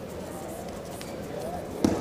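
Low hubbub of faint voices in a hall, with one sharp slap near the end as the two grapplers hand-fight, skin striking skin.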